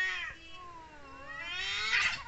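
Tabby cat yowling in an aggressive standoff with another cat, the warning calls before a fight. Two long wavering yowls: the first fades about half a second in, and the second rises and grows harsher, loudest at the end.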